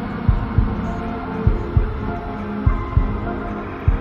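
Suspense film score: a sustained low drone with a heartbeat-like double thump repeating a little more than once a second.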